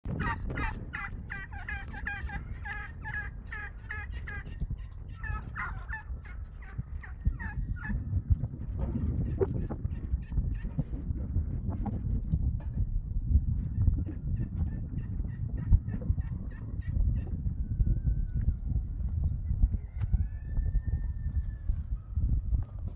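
Domestic turkeys gobbling in a quick, repeated run of calls over the first several seconds, fading out about eight seconds in. A low rumbling noise then fills the rest.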